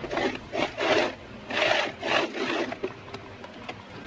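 Cotton Ankara fabric rubbed and handled at a sewing machine: about five irregular rasping swishes.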